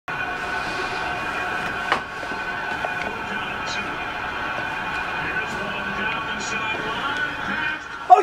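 Football game broadcast playing on a television: a steady crowd din from the stadium, with a single sharp click about two seconds in.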